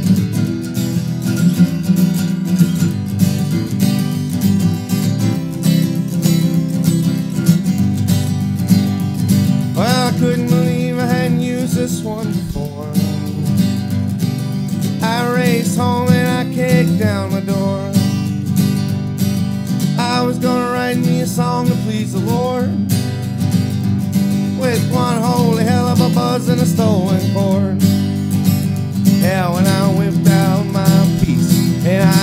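Acoustic guitar strummed in a steady country rhythm through an instrumental break. From about ten seconds in, a wavering, gliding melody line rises over the strumming in several phrases.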